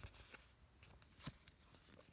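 Near silence, with faint rustling of a paper instruction sheet being handled and a couple of faint light clicks.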